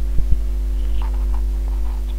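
Steady low electrical hum in the recording during a pause in the narration, with a few faint clicks in the first half-second.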